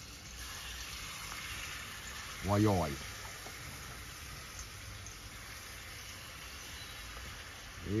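Cooking oil heating in a pot over a charcoal stove, a steady sizzle.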